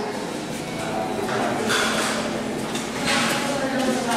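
Indistinct voices of people in a busy shop, with two short rushes of noise, one about halfway through and one near the end.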